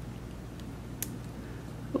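A faint low steady hum with one short, faint click about a second in, from a small LiPo pouch battery being pressed into a 3D-printed plastic holder by hand.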